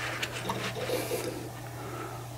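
A couple of faint computer mouse clicks over a steady low hum, as playback is started on a security-camera DVR.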